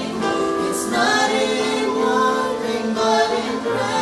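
A woman and a man singing a gospel song together, with held notes over a steady low accompaniment.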